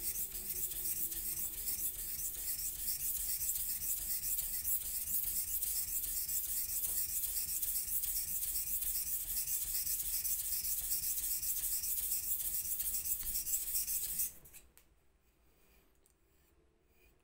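Single-bevel steel knife stroked back and forth on a wet whetstone, a steady rhythmic scraping, as one section of the right-side bevel is ground to raise a burr on the opposite side. The strokes stop about fourteen seconds in.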